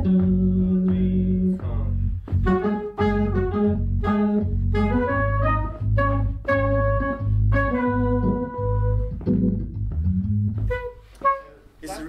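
Jazz band playing: a saxophone melody over deep, sustained bass notes and keyboard chords. The music breaks off near the end with a single sharp knock.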